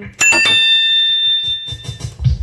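A single bright electronic bell tone, struck about a fifth of a second in and ringing on with several high overtones before fading near the end.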